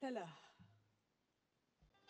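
A person's voice trailing off in a falling sound during the first half second, then near silence, with a faint low thump near the end.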